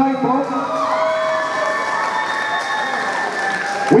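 Crowd cheering, with several long held yells over the noise of the crowd.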